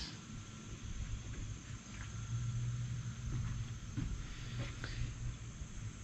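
Faint outdoor ambience under trees: a steady, thin insect drone over a low hum and rumble, with a few light knocks.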